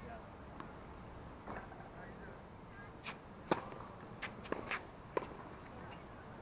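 Tennis balls popping off rackets and bouncing on a hard court: six or so sharp, irregular pops in the second half, the loudest about three and a half seconds in, over faint distant voices.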